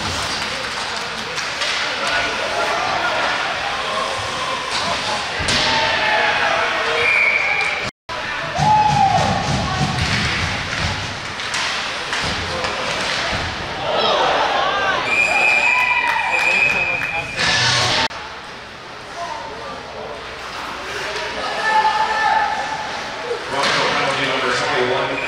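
Live ice-hockey game sound in an arena: pucks and bodies hitting the boards with thuds and slams, skaters and spectators shouting, and a referee's whistle blowing a few times.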